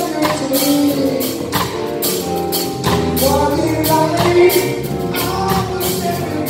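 Live band: a male lead vocal sung over electric guitar and a drum kit, with cymbal hits keeping a steady beat.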